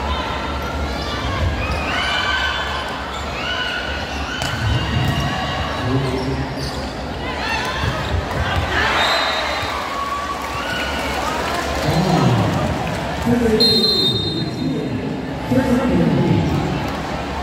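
Volleyball rally in a large echoing gym: the ball is struck and hits the floor, among players and spectators shouting and cheering.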